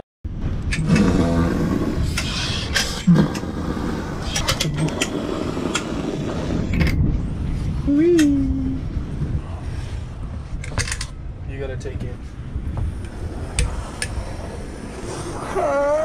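Caulking gun laying beads of construction adhesive on a ceiling panel, with scattered sharp clicks from its trigger, over a steady rumbling noise and a few brief muffled voices.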